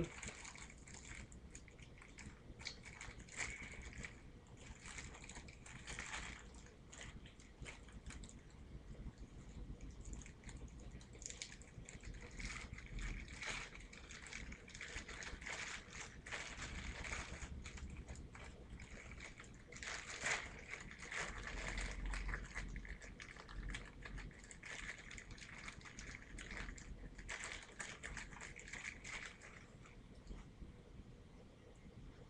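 Plastic packaging rustling and crinkling as it is handled, in irregular spells, louder for a moment about twenty seconds in.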